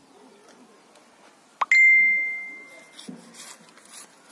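A single clear metallic ring from a date palm tapper's curved knife blade as it scrapes off the palm trunk while shaving the bark for sap tapping. A quick scrape is followed by one bright ringing tone that dies away over about a second and a half, with faint blade scrapes afterwards.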